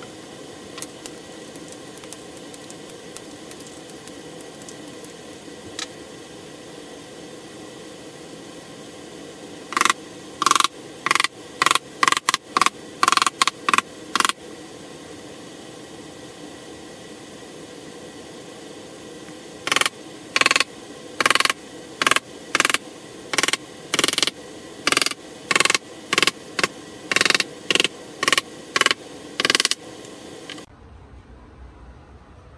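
Pneumatic nailer firing in two runs of short, sharp shots, each with a brief hiss of air, about two a second, over a steady shop hum, tacking small wooden blocks down onto a glued plywood substrate.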